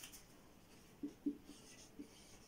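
Faint scratching of a marker pen writing on a whiteboard, with two short, faint low sounds about a second in.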